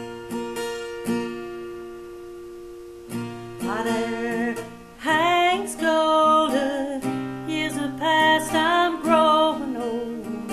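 Acoustic guitar with a capo, strummed alone for about three seconds, then a woman's voice comes in singing over it, with vibrato on the held notes.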